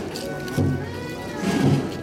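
Procession music with a low beat about twice a second and held tones above it, mixed with people's voices close by.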